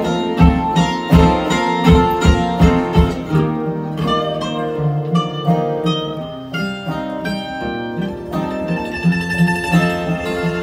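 Instrumental break of a live acoustic string trio, two acoustic guitars and a mandolin: hard rhythmic strumming for the first few seconds gives way to a picked single-note lead line, and the strumming comes back in near the end.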